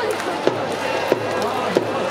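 Baseball spectators' rhythmic cheering: sharp clacks in a steady beat, about three in the two seconds, over a background of crowd voices.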